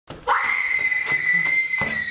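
A high-pitched scream, held on one note for nearly two seconds, comes in suddenly out of silence with a few thumps beneath it.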